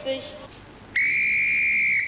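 Railway dispatcher's whistle blown in one long, steady blast starting about halfway in: the train departure signal.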